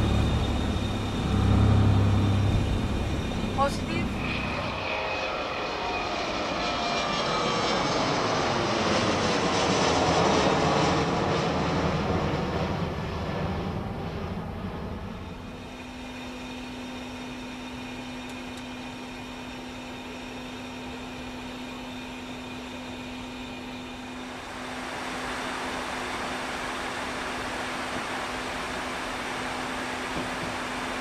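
Boeing 717 taking off, heard from the cockpit: heavy runway rumble through the first few seconds after V1, which fades as the aircraft lifts off. It gives way to airflow and engine noise during the climb. About halfway through the level drops and a steady low hum remains, with a louder steady hiss setting in near the end.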